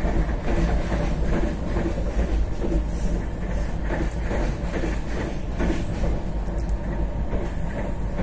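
Passenger train running at speed, heard from inside a carriage: a steady low rumble of wheels on the track with scattered clicks and clatter.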